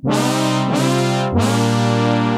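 Behringer DeepMind 12 analog polysynth playing a brass patch: sustained brass-like chords, changing chord about two-thirds of a second in and again with a new bass note just over a second in.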